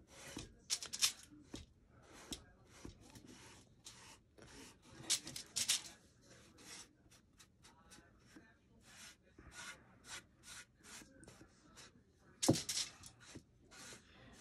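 Fingertips rubbing white paint along the edges of a small wooden box: a quiet, irregular run of short scuffing strokes as the paint is smoothed and the box is handled, with one louder knock near the end.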